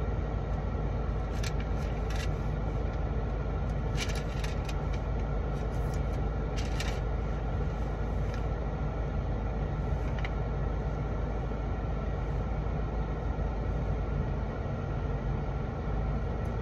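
Steady low hum inside a parked car's cabin with the engine idling, and a few faint short clicks and rustles scattered through it.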